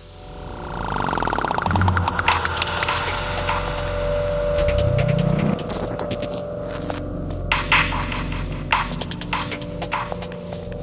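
Tense thriller film-score music fading in over the first second or two, with many short percussive ticks and hits. A low swell rises in pitch about five seconds in, and a steady held tone runs through the second half.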